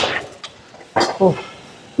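A man's hard breath out fading at the start, then a short, falling 'oh' groan of exertion about a second in, as he comes off a set on a leg press.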